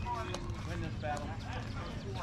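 Indistinct chatter of distant voices calling across a youth baseball field, over a steady low rumble.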